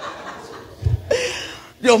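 A brief, breathy chuckle after a joke, with a short low thump about a second in, then a man's voice starting to speak near the end.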